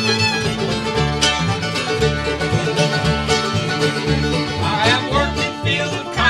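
Bluegrass band playing an instrumental passage on fiddle, mandolin, five-string banjo, acoustic guitar and upright bass. Quick picked notes run over a steady, even bass pulse.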